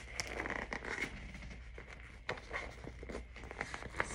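Rustling and crinkling of a waterproof double-layer toiletry bag with a mesh panel as it is handled and pulled open by hand, with irregular soft scrapes and small rubs of the fabric.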